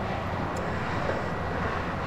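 Steady background rumble and hiss, with a faint tick about half a second in: room tone in a pause between spoken lines.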